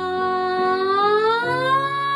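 A woman's singing voice sliding smoothly upward on an open 'ah' vowel as a vocal warm-up, rising for about a second and a half and then holding the top note, over steady lower backing notes.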